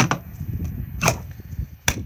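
Two sharp plastic clicks from a Thetford toilet cassette being handled, one about a second in and a louder one near the end, over a low rumble of wind on the microphone.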